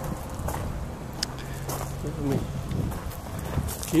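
Footsteps on gravel as a person walks, with a few light clicks and a brief low hum of a man's voice in the middle.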